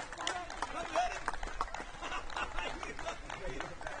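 Players calling out to each other during a youth football match, with many short taps and knocks scattered throughout.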